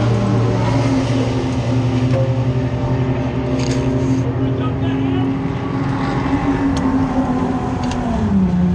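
Race car's engine idling steadily, heard from inside the cockpit, with a few sharp clicks and a short rustle about four seconds in as something brushes the in-car camera.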